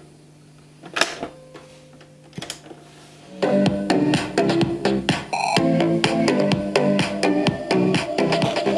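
Mechanical clicks from a cassette deck as the tape is loaded and started, then music playing from the cassette through the Silva New Wave 7007 boombox's speakers, starting about three and a half seconds in. This is the second tape deck, playing without trouble.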